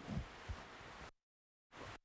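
Faint footsteps, a few soft low thuds of a person walking across a hard classroom floor, over a low room hiss. The sound cuts out completely for about half a second midway.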